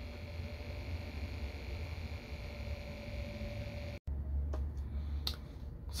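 Quiet room tone with a steady low hum. The sound drops out for an instant about four seconds in, and a couple of faint clicks follow.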